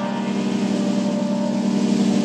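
Live rock band holding one chord: electric guitars, bass and keyboard sustaining a steady, dense chord with cymbals washing over it.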